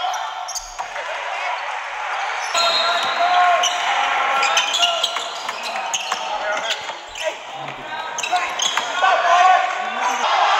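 Basketball game sound in a gymnasium: a ball being dribbled on the hardwood court, with sharp bounces scattered through, over the voices of players and spectators.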